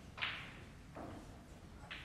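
A snooker referee in white gloves handling the colour balls and setting them on their spots on the cloth. Three brief, soft swishing knocks, the loudest about a quarter of a second in and the others about one and two seconds in.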